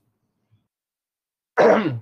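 A man clearing his throat once, near the end, after about a second and a half of silence.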